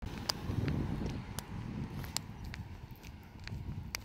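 Footsteps of a person walking along a paved road, a scatter of irregular light clicks over a low, uneven rumble.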